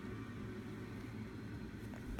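Quiet room tone: a faint, steady low hum and hiss with no distinct sound events.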